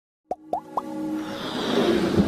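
Three quick plops, each a short upward blip about a quarter second apart, followed by a rising musical swell: synthesized sound effects of an animated logo intro.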